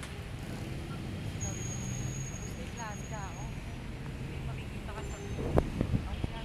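Road traffic from passing cars, trucks and motorcycles, a steady low rumble, with a thin high whine for about two seconds in the middle and a few sharp knocks near the end.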